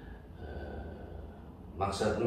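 A pause in men's talk with a steady low room hum, then near the end a sharp intake of breath as a man starts to speak again.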